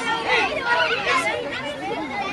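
A group of children chattering and calling out over one another, their high voices overlapping so no single word stands out.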